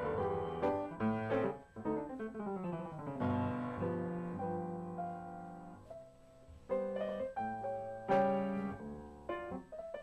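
Solo piano playing: quick runs of struck notes, then slower held chords that fade to a brief lull about six seconds in before a new phrase of chords begins.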